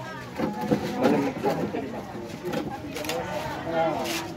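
Indistinct chatter of several people's voices, with no clear words.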